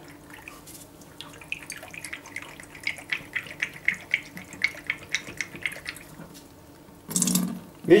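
Descaling acid sloshing and draining out of a gas boiler's plate heat exchanger into a bucket as it is shaken. It makes a quick run of splashes and gurgles, about four a second, with a louder burst of noise near the end.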